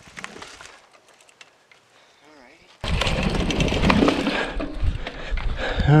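Mountain bike ridden down a dirt trail and over a wooden kicker ramp. After a near-quiet start, a sudden loud rush of wind on the microphone begins about three seconds in, with rumble and rattling from the tyres and the bike.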